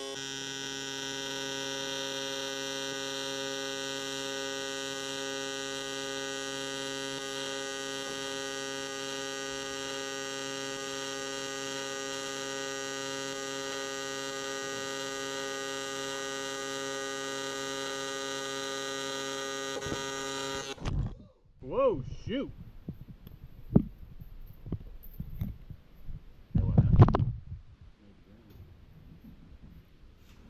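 TIG welding arc: a steady electrical buzz from the welder that cuts off abruptly about 20 seconds in as the arc is broken. Scattered short shop noises follow, the loudest a sharp knock near the end.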